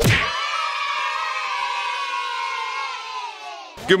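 A long, held cheer or shout from several voices, starting suddenly, sagging slightly in pitch and fading out after about three and a half seconds.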